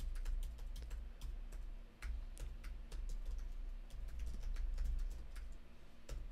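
Typing on a computer keyboard: a run of quick, uneven keystrokes over a low hum.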